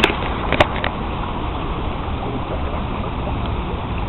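Steady rushing outdoor background noise, with a few sharp clicks in the first second.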